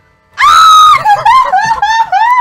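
A woman's loud, high-pitched scream: one long held shriek starting about half a second in, then a quick run of short, breaking squeals.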